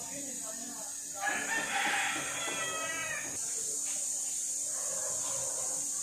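A rooster crowing once, a single call of about two seconds starting a little over a second in, over a steady high-pitched hiss.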